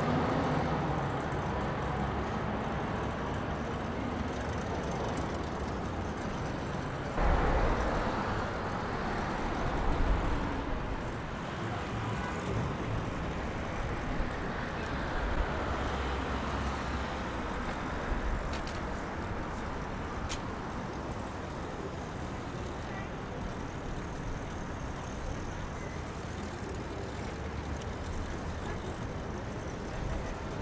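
Outdoor city ambience with steady road traffic noise, which gets suddenly louder for a few seconds about seven seconds in.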